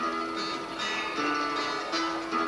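Acoustic guitar-type plucked string instruments playing an instrumental passage, a run of picked notes with no singing.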